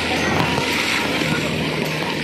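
Steady rush of wind, spray and rain on a phone microphone while riding a towed banana boat at speed over choppy sea.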